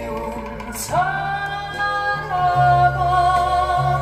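A woman singing a Korean folk song over instrumental accompaniment, played from a vinyl LP on a turntable. A long sung note comes in about a second in and is held, wavering with vibrato in its second half.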